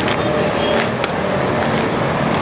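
Steady outdoor traffic noise, with a sharp click about a second in.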